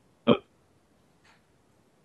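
A man's brief acknowledging 'mm', one short voiced sound, followed by near silence.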